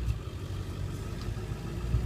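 Ford 7.3-litre Power Stroke turbo-diesel V8 with a straight-piped exhaust idling, heard from inside the cab as a steady low rumble.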